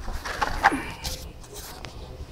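A short whining call, falling in pitch, about half a second in. It is followed by two brief rustles and a sharp click.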